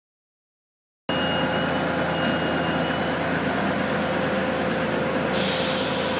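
Forklift running steadily, a constant mechanical noise with a steady hum in it, starting abruptly about a second in. A hiss joins in about five seconds in.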